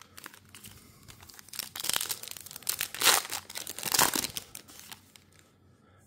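Crinkling rustles of a trading-card pack being handled: cards and their wrapper rubbing together, light at first, then louder for a couple of seconds before stopping about a second before the end.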